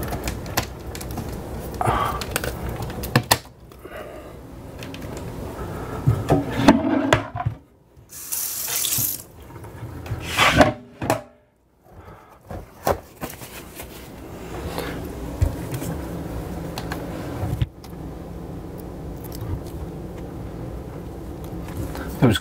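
Handling sounds of small plastic adhesive cord clips being fitted and a power cord being pressed into them and run along a window frame: rustling, scraping and small clicks, with a brief hiss about eight seconds in.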